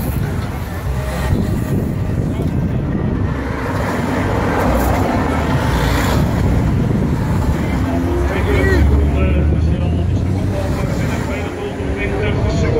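A van and a car driving past close by, with steady engine and road rumble, over spectators' chatter.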